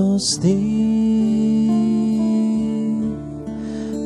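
Slow devotional hymn: a voice sings over acoustic guitar and holds one long note for about two and a half seconds.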